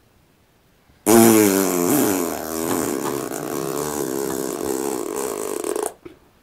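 A person blowing one long, loud raspberry, lips buzzing for about five seconds. It starts suddenly about a second in and cuts off just before the end.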